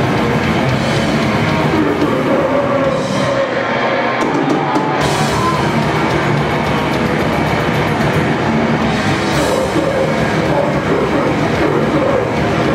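A grindcore band playing live at full volume: distorted electric guitars, bass and drums in a dense, steady wall of sound. The low end drops out briefly about four seconds in, then comes back.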